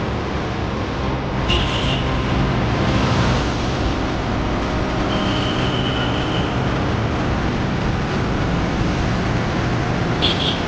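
A steady mechanical rumble like a running engine or pump, with a brief high tone about a second and a half in and a longer one about five seconds in.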